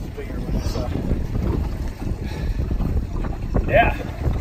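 Steady wind noise buffeting the microphone on an open boat at sea, with a brief voice sound near the end.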